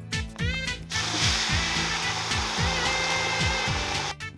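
Sliced onions and green chillies sizzling in hot oil in a pot, the hiss starting suddenly about a second in as they hit the oil. Under it runs background music with a steady falling bass beat.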